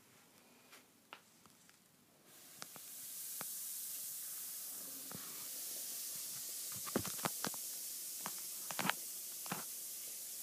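Lush Sakura bath bomb fizzing in bath water: a steady high hiss that starts abruptly about two seconds in and quickly swells, the sign of a fast-fizzing bomb. Several sharp clicks sound over the hiss in the second half.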